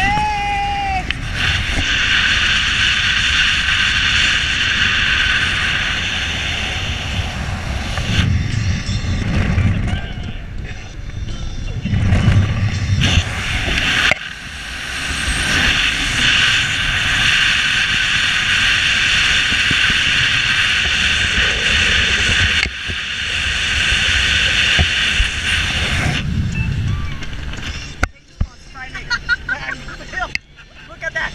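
Wind rushing over the microphone with road noise from a car driving at speed, the sound changing abruptly a few times; a short voice-like call near the start.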